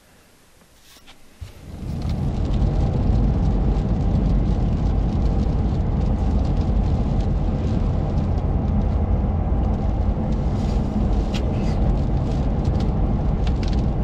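Road and engine noise of a vehicle driving on a highway, heard from inside the cabin: it comes in about a second and a half in and then runs steady, with a few faint ticks near the end.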